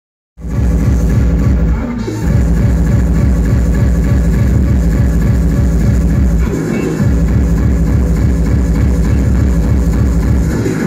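Loud hard electronic dance music with a fast, steady kick drum. It starts about half a second in, and the kick drops out briefly about two seconds in and again around seven seconds in.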